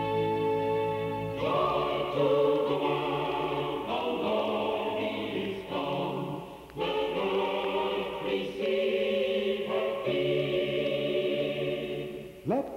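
Choir singing a sacred piece: a held chord gives way, about a second and a half in, to sung phrases separated by short breaths.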